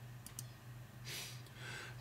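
Two quick faint clicks close together, a computer mouse clicking to advance a presentation slide. About a second later comes a soft breath drawn in, over a low steady hum.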